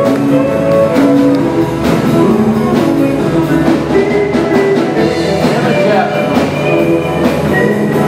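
Live band music with guitar and drums, playing continuously.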